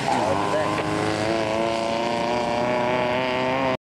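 Off-road dune buggy's engine running hard at steady high revs as it pulls away from the line on dirt; the sound cuts off abruptly near the end.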